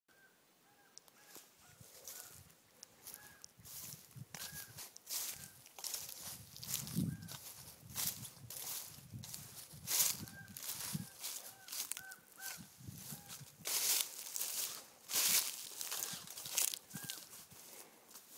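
Ravens calling back and forth, many short calls repeated every second or so, like an argument. Footsteps swish through grass and foliage over them, and the steps are the loudest sounds.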